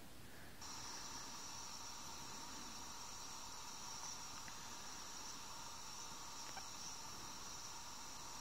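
Faint steady hiss from a phone's small speaker playing the soundtrack of a video streamed through Flash Player, switching on about half a second in.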